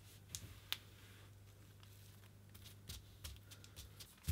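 Very faint soft clicks and crinkles of fingers pressing gold leaf flakes onto paper, a couple early and a cluster near the end, over a low steady hum.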